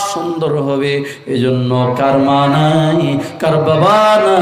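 A man chanting in a melodic, sung style, holding long notes in three phrases with short breaths between them.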